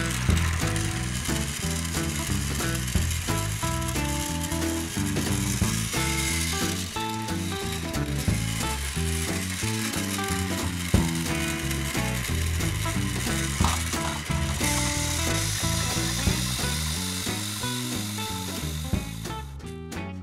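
Battery-powered TrackMaster toy trains running along plastic track, a steady mechanical whirring and rattling that cuts off just before the end, over background music.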